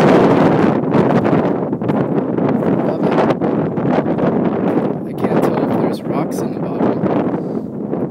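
Wind buffeting the camera microphone, a loud, rough, uneven rumble.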